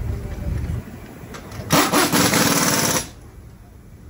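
Pneumatic impact wrench rattling for just over a second, starting about a second and a half in, running lug nuts onto a newly mounted wheel. A low rumble comes before it.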